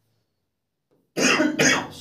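After a second of silence, a man coughs twice in quick succession.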